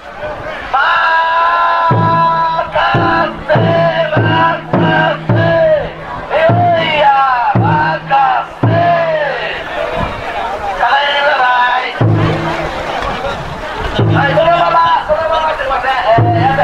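A taiko drum inside a Banshū-style festival yatai is beaten in repeated strokes, about two a second, while a crowd of carriers calls out a rhythmic chant over it. The drumming stops for a couple of seconds around ten seconds in, then starts again.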